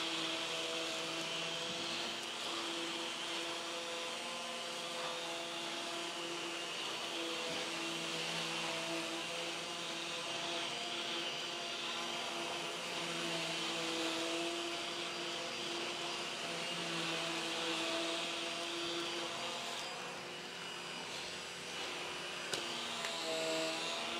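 Numatic Henry canister vacuum running with a battery-powered EBK360 DC electric power nozzle attached, being pushed over carpet: a steady motor hum with a whine on top that wavers slightly as the nozzle moves.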